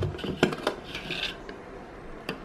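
A small plastic scoop knocking and scraping inside a plastic tub of pre-workout powder: a few light clicks and a short scrape about a second in.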